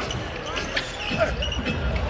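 Court sound of a basketball game: a ball bouncing on the hardwood floor with repeated low thuds, scattered short high squeaks and faint voices in the arena.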